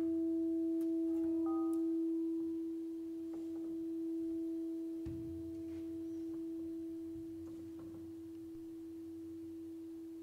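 A steady, pure sustained tone with a few fainter higher tones above it, slowly growing quieter. Brief higher notes sound about a second and a half in, and faint low rumbles and ticks come and go beneath it.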